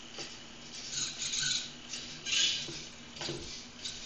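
Hobby servo motors of a homemade wooden robot arm driving in several short, raspy bursts of gear buzz as the arm swings down. The loudest burst comes about two and a half seconds in.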